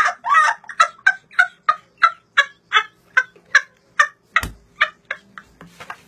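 A boy laughing uncontrollably in short, high-pitched gasping bursts, about four a second, tapering off near the end. A single low thump comes about four and a half seconds in.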